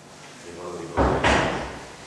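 A sudden heavy thump about a second in, followed at once by a second knock, then dying away.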